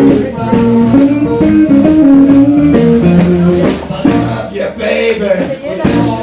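Live blues band playing an instrumental passage: electric guitar picking a melodic lead line over electric bass and a steady drum beat.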